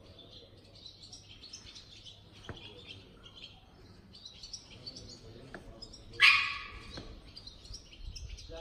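Many small birds chirping and twittering steadily, with one loud, sharp cry about six seconds in that fades within half a second.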